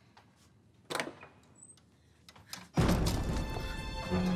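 A single wooden thunk about a second in, typical of a heavy door shutting, with a few faint ticks after it. Then, near three seconds in, dramatic score music cuts in loudly with a hit.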